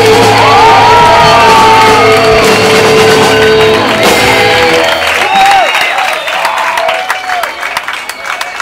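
A live pop-punk band's closing chord, distorted guitars and bass held and ringing out. About five seconds in the band stops and the crowd shouts, whoops and claps.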